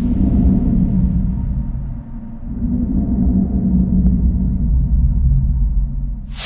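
A deep, low rumbling drone with no high sound above it. It dips briefly about two seconds in, then swells back.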